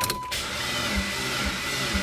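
Mitsubishi Lancer Evolution X's starter cranking the 4B11T turbo four-cylinder slowly, about two compression beats a second, without the engine catching. The slow cranking is taken for a weak or dead battery.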